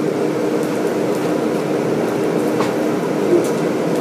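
Steady, even rushing noise with a faint low hum in an okonomiyaki shop, the sound of the room during a pause in the talk.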